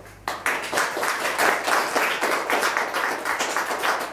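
Audience applauding, breaking out a moment in and holding steady, with individual claps distinct.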